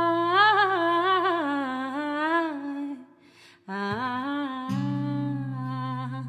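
A woman humming a wordless melody into a close studio microphone. She holds long notes with a wavering ornament, breaks off briefly about three seconds in, then holds a second long note. A low acoustic guitar chord rings underneath and is struck again just before the end.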